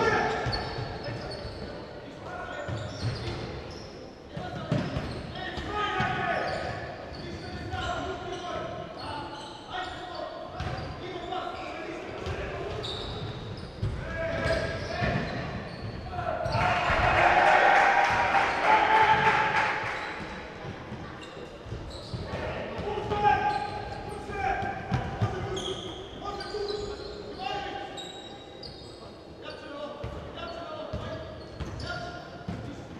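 Basketball game sounds in a large, echoing sports hall: the ball bouncing on the wooden court, with voices calling out on and around the court. The noise swells louder for a few seconds a little past halfway.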